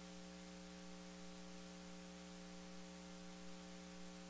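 Faint, steady electrical mains hum with a background hiss, a low buzz with several fixed overtones that does not change.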